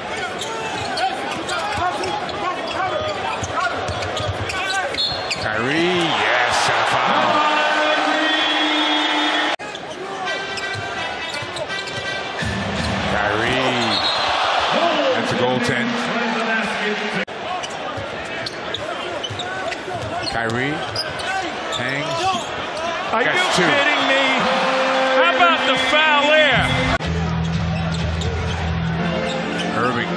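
A basketball being dribbled on a hardwood court amid arena crowd noise, in game broadcast clips that cut abruptly twice.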